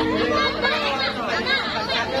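Several people talking among themselves in a break in the music; a held musical note dies away in the first half-second.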